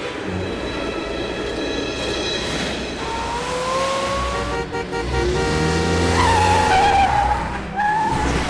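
A small truck driving along, its engine and road noise under background music, then tyres screeching in a long skid from about six seconds in until just before the end.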